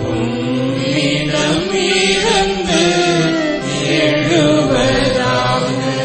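Responsorial psalm music in a Tamil church setting: a melody line that bends and glides over steady, held accompaniment notes.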